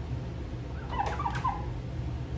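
Cloth squeaking on a glass tabletop as it is wiped: a short run of high squeaks about a second in, over a steady low hum.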